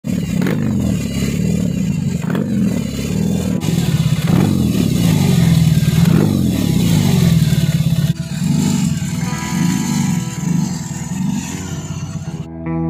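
BMW R18 First Edition's 1802 cc boxer twin running through handmade aftermarket slip-on mufflers. It is revved in repeated throttle blips, swelling roughly every two seconds.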